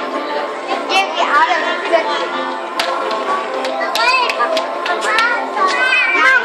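Children's high-pitched voices calling and chattering over steady background music.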